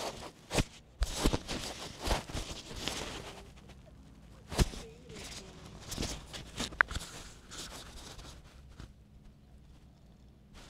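Irregular clicks, knocks and rustling close to the microphone, loudest in the first few seconds with a sharp knock about halfway through, then quieter rustle.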